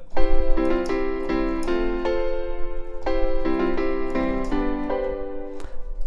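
Dance piano patch on the VPS Avenger software synthesizer playing a melody over a held chord. The harmonizer is set to its 'Circular' preset and adds extra notes to each melody note. The notes change about every half second, in two short phrases with a brief break in the middle.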